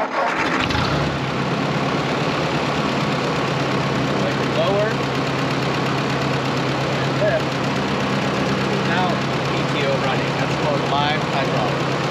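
A Ford Workmaster tractor's four-cylinder engine starting just after the start, then running at a steady idle.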